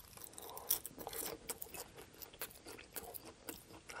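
Close-up chewing of a mouthful of salad with chopped lettuce: a quick, irregular run of crisp crunches and small wet mouth sounds.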